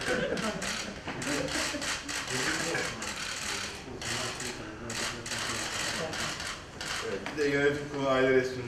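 Camera shutters clicking in rapid, irregular bursts as a group poses for photographs, over a murmur of voices in the room.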